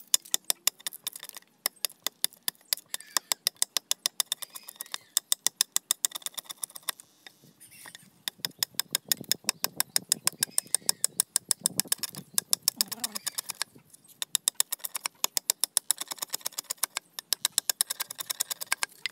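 Knife blade scraping and shaving the outer skin off a green bamboo culm in quick strokes, about five a second, in runs with a few short pauses.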